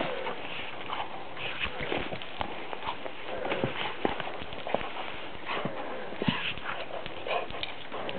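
A Lab/shepherd mix dog mouthing and pushing a rubber ball through snow: irregular crunches, clicks and knocks from paws, teeth and ball in the snow.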